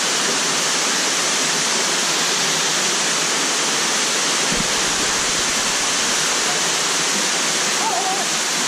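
Steady rush of flowing river water in a rocky canyon pool, loud and unbroken, with a brief low thump about four and a half seconds in.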